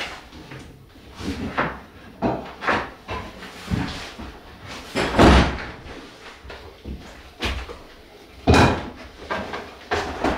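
Irregular knocks, bumps and clatters of tools and gear being handled and set down inside a bare timber-framed room, with the loudest thuds about halfway through and again near the end.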